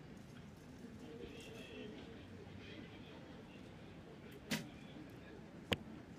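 A recurve bow shot at a faint outdoor background: the string is released with a short sharp snap about four and a half seconds in, and the arrow strikes the target with a second, sharper crack just over a second later.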